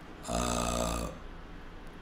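A man's held, even-pitched hesitation sound, a drawn-out "ehh" of under a second, in a pause between phrases.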